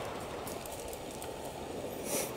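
Steady, low outdoor background noise with a few faint, short clicks.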